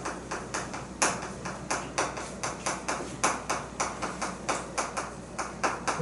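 Chalk on a chalkboard as a line of characters is written: a quick, uneven run of sharp taps and short scrapes, several a second.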